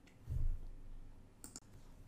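A soft low thud near the start, then a quick pair of faint clicks about one and a half seconds in.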